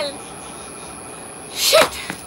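A person's short, sharp, breathy vocal burst, like a gasp or sneeze, about one and a half seconds in, over a low steady background.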